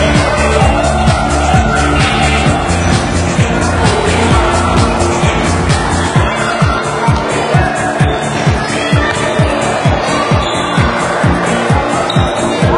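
Electronic music with a steady kick drum, about two beats a second; a sustained bass line drops out about six seconds in, leaving the kick drum and higher parts.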